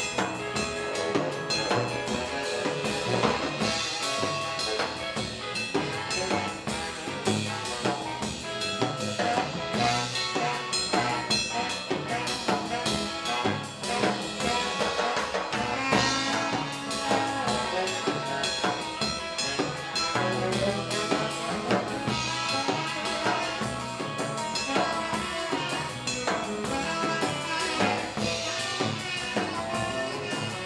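Live 1950s-style blues and R&B band playing an instrumental passage: saxophone lead over walking upright double bass, drum kit with snare and rimshots, and electric guitar.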